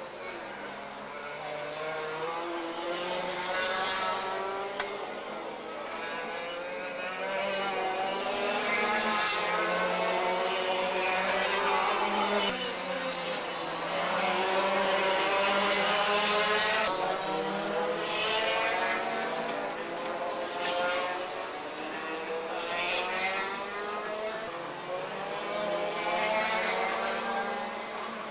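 Several two-stroke Formula TKM kart engines revving, their pitch rising and falling again and again as the karts accelerate and lift off, several engines overlapping.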